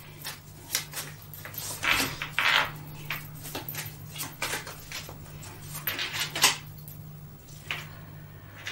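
Tarot cards handled by hand: shuffled and drawn from the deck, with soft swishing riffles and light clicks of card on card, and a card pressed onto the table near the end.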